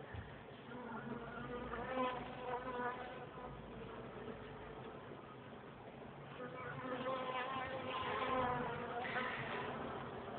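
Honeybees buzzing close to the microphone at an opened hive: a wavering hum that shifts in pitch as bees fly past, swelling louder about a second in and again from about six to nine and a half seconds.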